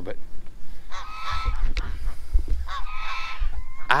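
Domestic geese honking: two drawn-out calls, one about a second in and another near three seconds.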